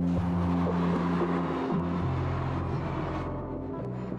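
Slow background music of held low notes that shift every second or so, with road traffic noise underneath as a car goes by, the traffic fading out about three seconds in.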